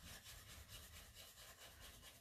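Near silence with a faint, quick scratching of a dry natural-bristle paintbrush scrubbing paint onto a wooden drawer front, several strokes a second.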